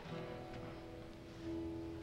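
Acoustic guitar strings plucked one at a time and left ringing while the guitar is tuned, with a fresh note struck about a second and a half in.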